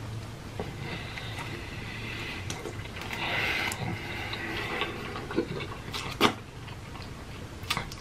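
A person chewing a big mouthful of a soft-bunned triple cheeseburger: soft, wet mouth sounds and small clicks, with a few sharper mouth clicks in the last two seconds.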